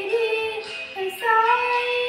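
A young girl singing a Hindi devotional bhajan to Sai Baba, holding long notes. About a second in, her voice steps up to a higher note and holds it.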